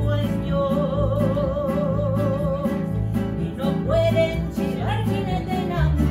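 Live mariachi band playing: violins, guitars and a guitarrón, with long held notes in vibrato over an even, pulsing bass and strummed rhythm.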